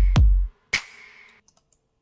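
Hip hop drum loop playing back: deep kick hits with long low booms and layered claps with a ringing reverb tail. The claps carry a narrow high-Q EQ cut around 400 to 550 Hz to clear their reverb mud. Playback stops about a second and a half in, followed by a few faint clicks.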